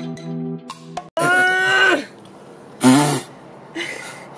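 Background music with plucked notes for the first second, then a hard cut to a person making a loud, long drawn-out vocal sound whose pitch drops at its end, followed by a second, shorter one about a second later.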